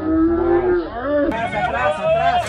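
A man laughing in long, drawn-out wavering vocal sounds. A little over a second in, this gives way to the chatter of children and adults at an outdoor party.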